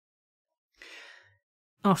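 Near silence broken about a second in by one short, soft breath from the narrator, a breath taken between sentences of the reading; her voice starts again at the very end.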